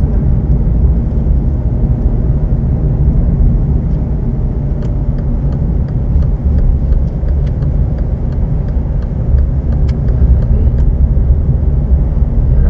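Inside a car moving at low speed: a steady low rumble of engine and tyre noise as it pulls away in second gear, with faint, irregular ticks.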